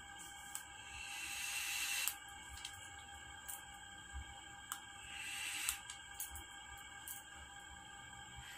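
A long draw on a Vapx Geyser pod mod, its airflow set half open: a soft hiss of air that swells and stops sharply about two seconds in, then a shorter breathy hiss around five seconds in, over steady background music.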